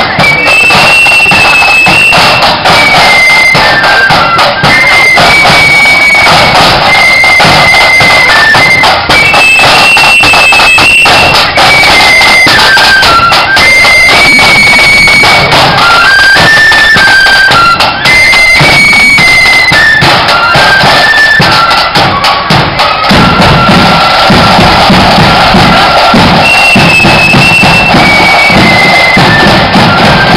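Marching flute band playing a high, fast-moving melody on flutes over side drums, very loud and close.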